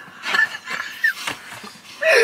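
Breathy, wheezing laughter from young men, with a short high squeak about a second in.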